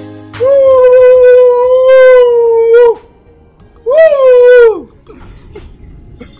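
Two high, howl-like vocal calls: a long one held on one steady pitch for about two and a half seconds, then a shorter one that rises and falls away.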